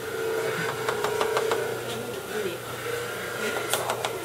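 Knife blade scraping and chipping at a plaster dental cast, a quick run of short scrapes about a second in and another near the end, over a steady background hum.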